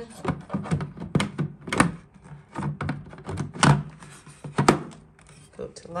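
Lid of a Vitamix FoodCycler FC-50 food recycler being set on the bucket and twisted to line up and lock: a string of short clicks and knocks, the loudest two a little before four and five seconds in.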